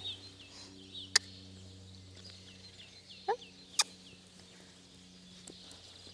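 Small birds chirping: short, high chirps repeated over and over, fading out after about three and a half seconds, over a steady low hum, with two sharp clicks about a second and nearly four seconds in.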